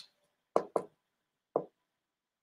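Three short knocks: two in quick succession about half a second in, and a third about a second later.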